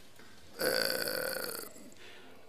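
A man's drawn-out, raspy hesitation 'ehh', held on one unchanging note for about a second before it cuts off.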